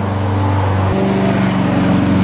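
Self-propelled Honda walk-behind lawn mower running steadily under load as it is pushed across grass. About a second in its deepest hum drops away and a higher note takes over.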